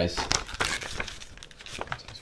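Glossy paper poster rustling and crinkling as it is handled, loudest in the first second, then softer rustling with a few small clicks.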